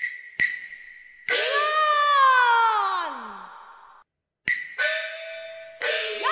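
Cantonese opera accompaniment led by percussion: several sharp strikes, then a large opera gong rings and falls steadily in pitch for about two seconds. After a brief dropout, more strikes come in with held tones.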